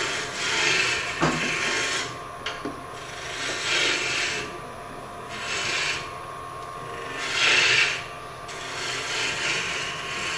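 A gouge cutting a spinning wood cylinder on a lathe: a shaving hiss that swells and fades every second and a half or so as the tool is swept along the work, with one sharp click about a second in.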